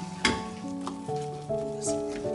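Wooden spatula stirring a thick curry in a stainless-steel pan on the stove, with a few short, sharp scrapes against the pan, under background music.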